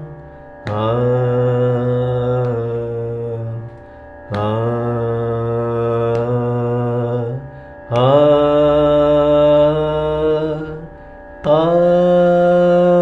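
A male voice singing long held notes in Carnatic style, four of them, each about three seconds long and sliding up into its pitch, with short breaths between. A faint steady drone carries on underneath.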